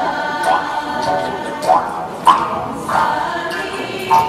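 A group of voices singing together, with irregular sharp strikes cutting through every half second to second.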